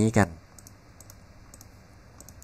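Several faint computer-mouse clicks, some in quick pairs.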